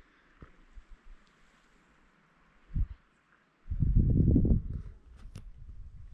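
Footsteps on a stone mountain path, a few scattered taps and scuffs, with a low buffet of wind on the microphone lasting about a second, starting about four seconds in.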